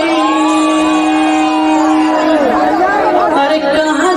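A loud voice on the dance's playback track holds one long steady note for about two seconds, then slides down, with other voices overlapping it; the backing music is scarcely heard.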